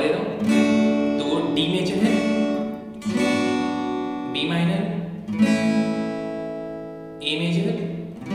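Acoustic guitar chords strummed one at a time and left to ring, about six strums, each fading before the next chord.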